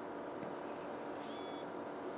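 Steady faint electrical hum, with one short high electronic beep a little over a second in as the smartphone reboots after a factory reset.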